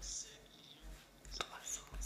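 A pause in a speech at a lectern microphone: a faint breath right at the start, then a single mouth click about a second and a half in, over low rumbling bumps from the microphone.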